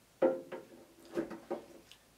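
White plastic bracket knocking against the rim of a stainless steel ultrasonic tank as it is fitted on, a few sharp knocks, the first the loudest, each followed by a brief metallic ring from the tank.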